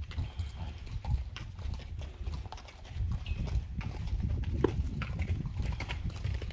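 A horse at a metal paddock rail mouthing and nuzzling at a hand, with scattered irregular knocks and clicks.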